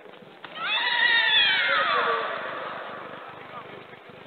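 A female karate fighter's kiai. One loud, high shout starts about half a second in, falls in pitch over about a second and a half, then fades.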